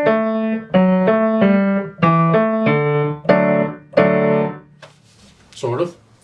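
Acoustic grand piano playing a simple melody over chords in both hands, a short phrase of separate notes about two a second, played loud. The last chord rings out and fades about four and a half seconds in.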